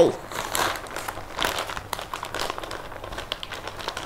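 Plastic ziplock bag crinkling and rustling in irregular short crackles as rock salt is tipped from a smaller bag onto the ice cubes inside it and the bag is handled.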